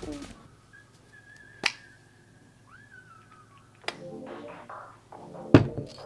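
A few sharp clicks and one heavier thud near the end, from things being handled close to the microphone, over a faint thin whine that rises and then falls. Soft background music comes in about two-thirds of the way through.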